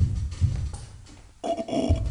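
Low, dull thumps and rumbling, heard as something walking on the floor overhead.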